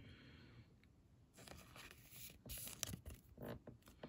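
Faint rustling and light scrapes of a trading card being handled and slid into a clear plastic sleeve, with a few soft clicks in the second half.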